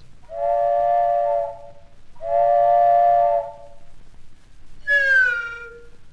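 Two long, steady blasts of a chime-toned train whistle, then near the end a shorter whistle that slides down in pitch: a failed try at the same whistle.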